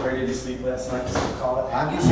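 A person speaking, heard over the stage PA in a hall, with short broken phrases and no music under it.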